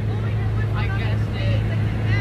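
Gas-powered balloon inflator fan engine running at a steady low hum, with crowd voices faintly over it.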